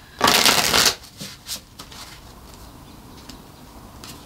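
A deck of tarot cards riffle-shuffled once, a brief fluttering burst lasting under a second, followed by a few soft clicks of the cards being handled.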